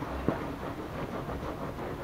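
A wet, soapy microfibre cloth rubbing over a white faux-leather sofa cushion, with a steady low rumble underneath and two short clicks near the start.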